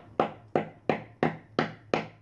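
A run of sharp, evenly spaced percussive hits, about three a second and six in all, each starting suddenly and dying away quickly.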